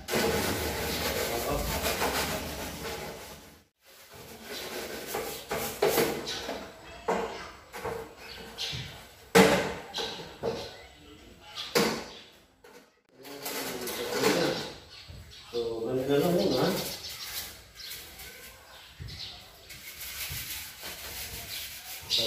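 Cleaning sounds on a tiled kitchen counter: rubbing and scrubbing, with a few sharp knocks as items such as a portable gas stove are picked up and set down.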